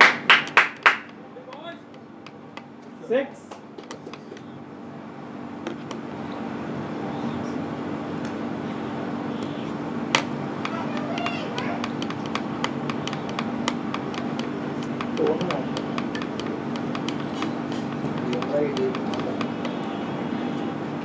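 A few hand claps in the first second, then faint background voices over a steady low hum that grows a little louder from about five seconds in, with scattered clicks.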